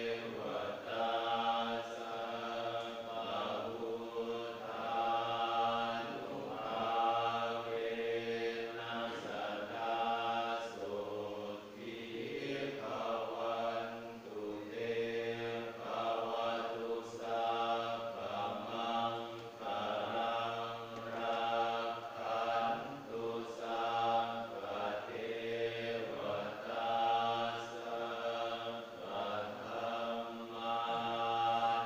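Group of Thai Buddhist monks chanting together in a steady monotone, phrases held for a second or two with short breaths between.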